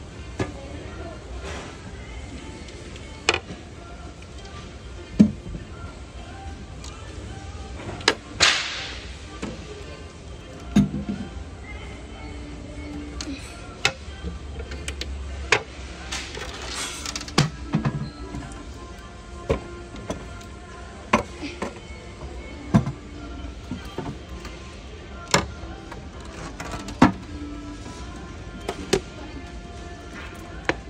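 Plastic toilet seats and lids on display toilets being lifted and let fall, giving sharp knocks every second or two, with a short whoosh about eight seconds in.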